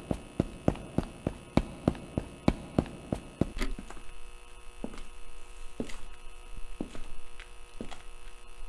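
Quick, evenly spaced footsteps, about three a second, over a steady electrical hum. After about three and a half seconds the steps become fainter and uneven while the hum carries on.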